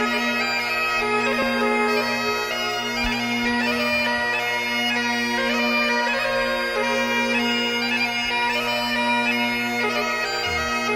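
Bagpipe music: a steady drone held under a moving melody.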